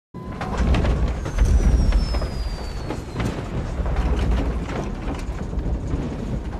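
Airliner cabin noise in turbulence: a deep, steady rumble that starts abruptly, with scattered rattles and knocks throughout, and a thin whistle sliding down in pitch over the first few seconds.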